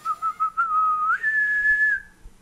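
A person whistling a short tune with a clear, pure tone: a few quick notes, a longer held note, then a step up to a higher note held until it stops near the end.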